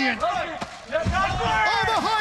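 Raised men's voices shouting during a kickboxing exchange, with a dull thud of a gloved punch landing about a second in.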